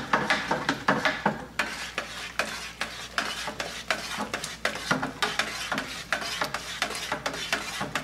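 Hot beer wort being stirred fast with a paddle in a stainless steel brew pot to whirlpool it, so the hops settle in the centre. The liquid swishes and sloshes, with a quick run of knocks and scrapes from the paddle against the pot.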